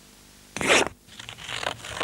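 Scissors cutting into a photographic print: one loud, short rasping cut about half a second in, then fainter scratching and snipping through the stiff photo paper.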